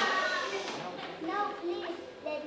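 Young children's voices talking in short, high-pitched snatches, growing quieter through the moment.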